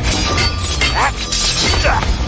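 Dramatic battle music from an animated series, laid under fight sound effects with repeated sharp clashing, shattering hits.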